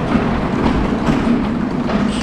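A sectional garage door opening: a steady motor hum with a rumbling rattle of the door panels rolling along their tracks.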